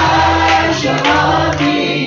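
Live worship song in a church: a man and a woman singing into microphones over keyboard accompaniment, with a steady beat about twice a second.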